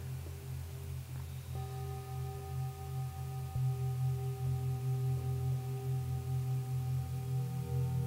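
Singing bowl ringing with a low, wavering hum. A set of higher ringing tones comes in about a second and a half in and holds steady, and more tones join near the end.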